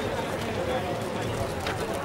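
Crowd chatter: several people talking at once, their voices overlapping.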